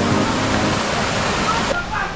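Steady rush of white water pouring over a small river cascade. It drops away abruptly near the end.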